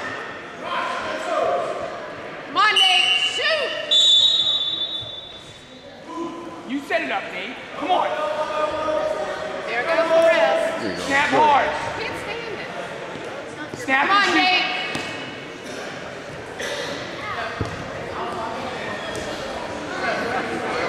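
Several voices shouting and calling out in an echoing gymnasium, with occasional thuds.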